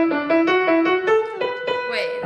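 Piano playing a quick line of single notes, about four a second, settling on a held note near the end.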